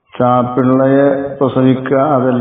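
A man reciting in a chanting voice, holding long, even notes with a brief break in the middle.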